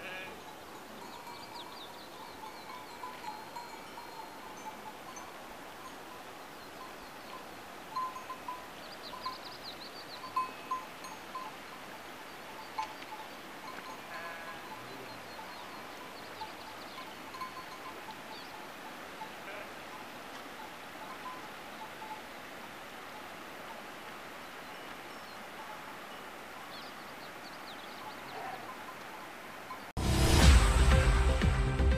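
Bells on a grazing flock of sheep ringing here and there, with an occasional sheep bleat, over a steady background hiss. The bells jingle louder for a few seconds about eight to eleven seconds in.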